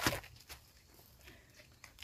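The tail of a machete chop into a banana plant's soft, fibrous trunk at the very start, then a soft knock about half a second in and a few faint ticks and rustles.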